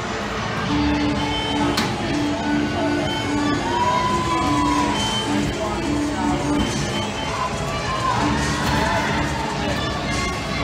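Music playing in a large hall over crowd noise, with chatter, cheering and children shouting. The music carries a run of short repeated notes, and there is one sharp knock about two seconds in.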